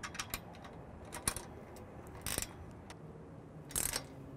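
Allen wrench and 10 mm wrench working the bolt of a B24 radio's metal pole-mount bracket, tightening the loose mount: scattered small metal clicks and ticks, with two short, louder scrapes, one about halfway through and one near the end.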